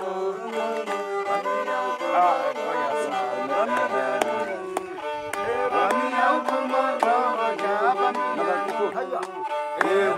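A bowed gourd-resonator fiddle playing a continuous tune with sliding pitches, joined by a singing voice. Sharp taps recur through it like a beat.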